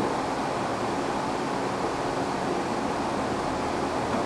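Small window air conditioner, converted into a ducted package unit, running steadily in cooling: an even rush of its blower and compressor with air moving through the ducts.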